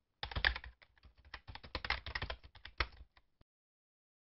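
Keyboard typing sound effect: a rapid run of key clicks lasting about three seconds, ending with a couple of separate taps.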